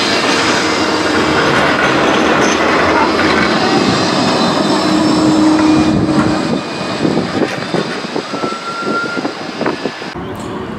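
Blackpool Bombardier Flexity 2 tram running past close by on street-level rails, with a short low whine near the middle. The noise stays loud for about six and a half seconds, then eases as the tram moves away.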